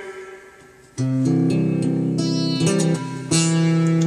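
Acoustic guitar strummed: a chord dies away, then about a second in a new chord is struck and rings, with a second strum near the end.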